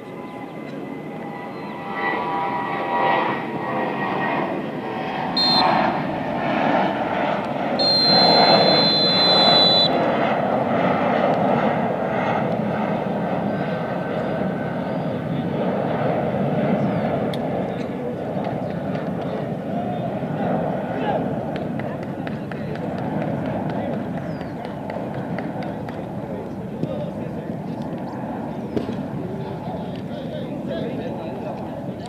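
Referee's whistle: a short blast about five seconds in, then a long blast of about two seconds, the final whistle ending the match. Under it runs a steady wash of voices that swells around the whistles.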